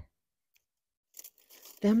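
After about a second of silence, a faint rustle and crunch of dry, dead hellebore foliage being cut back and pulled away by a gloved hand.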